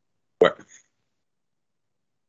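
A single short spoken word, "bueno", then complete silence, the audio gated to dead quiet between words.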